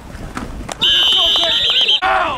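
Referee's pea whistle giving one long blast, starting about a second in and warbling near its end, blowing the play dead after the tackle. Players' shouts are heard under it.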